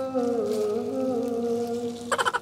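Music: a single singing voice holding long notes, gliding slowly from one pitch to the next.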